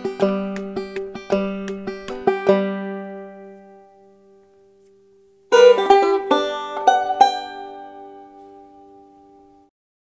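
Clawhammer banjo playing the last few notes of a tune, then the final chord ringing and fading away. About five and a half seconds in, a short plucked-string jingle of a few notes starts, rings and fades out near the end.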